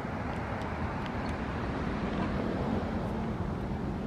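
Steady low rumble of distant vehicle noise, with a few faint ticks.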